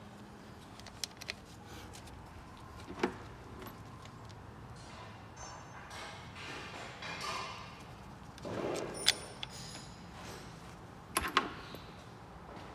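Light metallic clinks and taps as camshaft carrier caps and parts are handled and set down on an aluminium cylinder head. There are a handful of sharp clicks, the loudest about two-thirds of the way through, and a quick cluster near the end.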